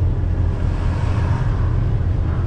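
Semi-truck diesel engine running steadily with road noise while driving, heard from inside the cab as a constant low rumble.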